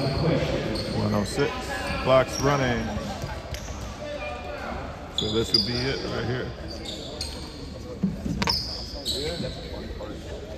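Basketball bouncing several times on a hardwood gym floor, a free-throw shooter dribbling before the shot, amid spectators' voices in the echoing gym.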